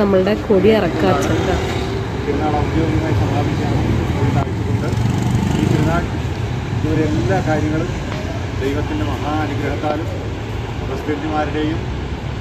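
A voice chanting a prayer in short sung phrases with pauses between them, over a steady low rumble of road traffic.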